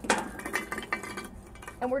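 Lumps of hardwood charcoal set onto a cast iron Dutch oven lid: one sharp clink at the start, then several lighter clinks and scrapes over the next second.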